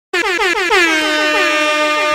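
Air-horn sound effect opening a music track: a quick string of about five short blasts, each falling in pitch, then one long held blast.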